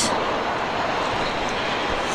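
Steady rushing noise of riding a bicycle over paving: wind over the bike-mounted camera's microphone together with tyre rumble.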